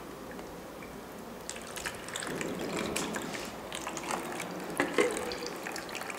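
Hands squeezing and kneading wet fermented Christmas melon pulp in a plastic sieve: squelching, with juice dripping and splashing through. From about a second and a half in, the small wet clicks and splashes come thicker and faster.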